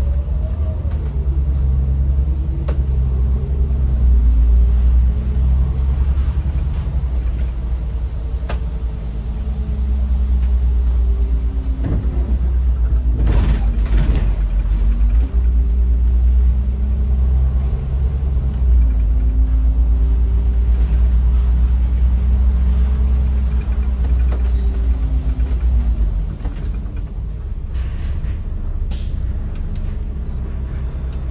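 Autosan Sancity M12LF city bus's diesel engine and drivetrain heard from the driver's cab while under way: a heavy low rumble whose pitch rises and falls several times as the bus accelerates and eases off. A short burst of air hiss comes about halfway through. Near the end the engine drops to a lower, quieter note as the bus slows, with another brief hiss.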